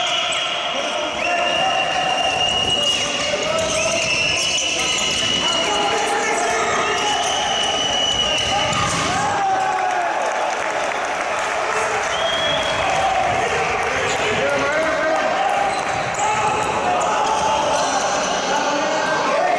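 A handball bouncing and being thrown on a sports hall's hard floor during open play, with players' shouts mixed in.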